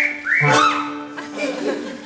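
Two quick rising whistle-like slides, then an arching one, over a music track with a steady held note; the sound thins out in the second half.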